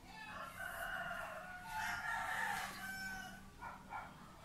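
A rooster crowing in the background: one long crow of about three seconds, over a faint steady low hum.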